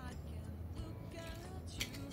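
Quiet background music with a steady low hum. Near the end come a few short clicks as shoe-rack pipes and connectors are handled.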